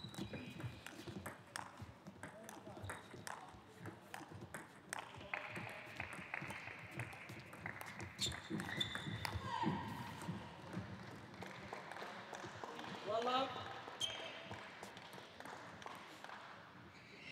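Table tennis rally: the ball clicks repeatedly and irregularly off the rackets and the table.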